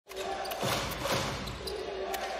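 A basketball dribbled on a hardwood arena court, several separate bounces over the hall's steady background noise.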